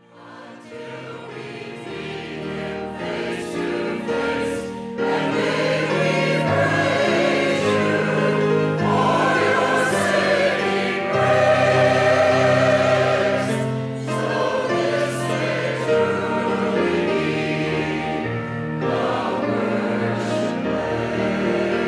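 Church choir singing, fading in from silence over the first couple of seconds and then holding steady.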